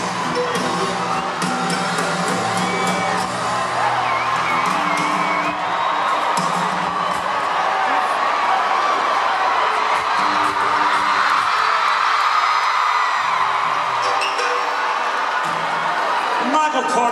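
Live country band playing an instrumental, fiddle over electric bass and drums, while a large crowd cheers and whoops throughout; the cheering swells in the second half.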